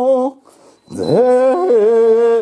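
Buddhist goeika hymn sung in long, drawn-out melismatic notes: a held note ends, there is a brief breath pause, then the next note begins with an upward scoop in pitch and is held steady.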